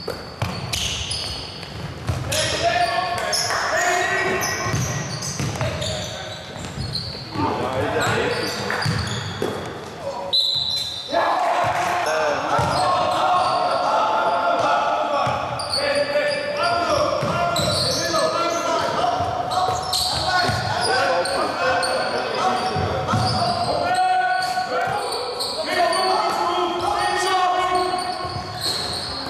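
Indoor basketball game: the ball bouncing on the court and players and people courtside calling out, echoing around a large sports hall.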